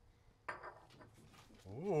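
Mostly quiet, with a brief faint sound about half a second in; near the end a man's voice rises in pitch as he starts to say "okay" with a laugh.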